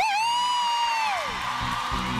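A single high, held whoop shouted into a microphone, level for about a second and then sliding down in pitch, over crowd noise at a funk performance; the bass beat is out during the whoop and comes back in near the end.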